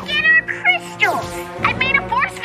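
A cartoon moth creature's voice: several short, high squeaky chirps that rise and fall in pitch, over steady background music.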